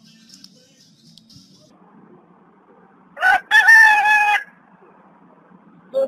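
A loud pitched call a little past halfway: one short note, a brief gap, then a held, nearly level note lasting almost a second.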